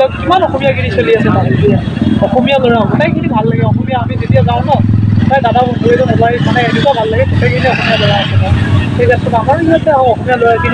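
A man talking, over a steady low rumble of road traffic.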